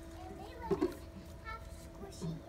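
Children's voices: a short exclamation about a second in and a brief high-pitched call a little later, over a steady hum.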